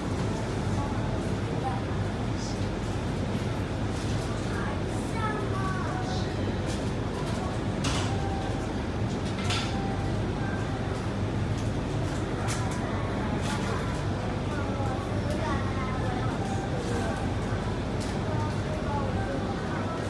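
Steady low hum inside a Sentosa Express monorail car standing at a station with its doors open, with faint voices of passengers and a few light clicks.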